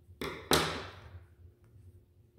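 Handling sounds of scissors and crochet work on a wooden tabletop: a brief rustle, then a sharper knock about half a second in that fades over about half a second.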